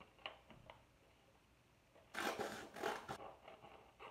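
Scissors cutting through folded paper: a few faint clicks, then a crackly cut of about a second midway.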